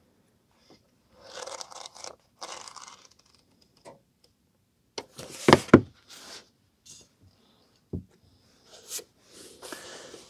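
Pages of an old paperback rustling as they are flipped, then a pair of sharp knocks, the loudest sound, as the book is handled and laid down, with more paper rustling as the next paperback is picked up near the end.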